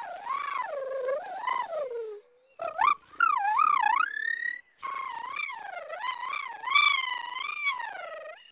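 Wordless warbling 'hummingbird language' exchanged between a cartoon fairy and a hummingbird: three phrases of wavering, swooping sung tones, the first lower in pitch, the second ending on a held high note, the third long and wobbling.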